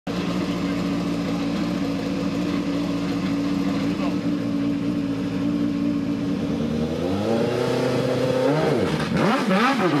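Osella PA9/90 Alfa Romeo race car engine idling steadily. About seven seconds in it revs up, and near the end comes a run of sharp throttle blips, each rising and falling in pitch.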